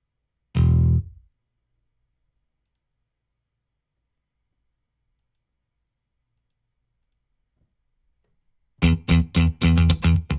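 Sampled electric bass from Native Instruments' Prime Bass: one short note about half a second in, then silence, then a quick run of plucked bass notes, about four or five a second, starting near the end.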